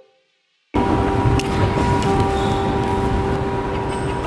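A brief silence, then, about three-quarters of a second in, loud steady shopping-mall ambience begins: an even background roar with a steady hum.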